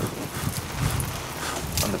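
Wind buffeting the microphone outdoors: an irregular low rumble that comes and goes.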